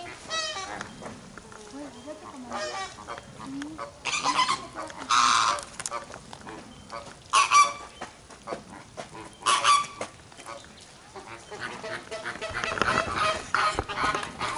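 A flock of flamingos calling with goose-like honks, soft calling throughout and louder honks about four, seven and a half and nine and a half seconds in.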